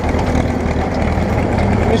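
Farm tractor engine running steadily, with a low even hum, as it tows a hay trailer, heard close up from the driver's seat.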